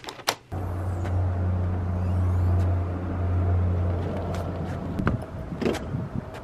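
Two sharp clicks at the start, then a car engine idling with a steady low hum that stops about five seconds in, followed by a couple of knocks near the end.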